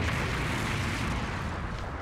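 Anime explosion sound effect: a sudden blast followed by a rumble that dies away over about two seconds.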